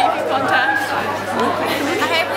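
Several teenage girls' voices talking over one another: overlapping chatter without clear words.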